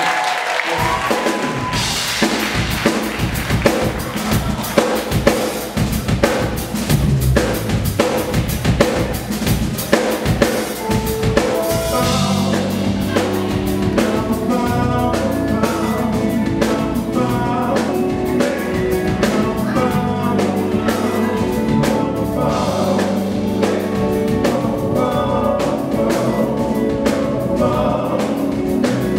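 Live band playing a soul/R&B song intro: a drum kit beat with snare and kick comes first, and about twelve seconds in bass and sustained keyboard chords join in under it, with some voices.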